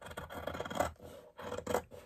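Scissors cutting through headliner foam and faux leather along a panel edge: a rough cutting sound in strokes, with a short pause a little after a second in.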